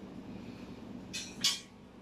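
Two short scraping handling noises about a second in, as a plug-in timer box is set down on a table by gloved hands, over a low steady room hum.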